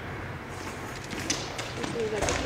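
A goalball thrown across a hall floor: a few sharp knocks in the second half, with a faint high jingle from the bells inside the ball, over the low hum of a large hall.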